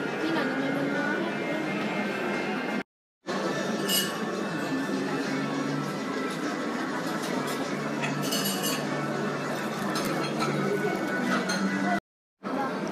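Restaurant dining-room ambience: background music and indistinct chatter, with dishes and cutlery clinking now and then. The sound drops out briefly about three seconds in.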